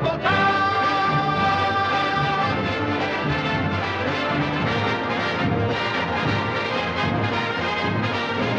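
Orchestral show-tune music with prominent brass, a long held note over the first two seconds or so, then a busy instrumental passage between sung verses.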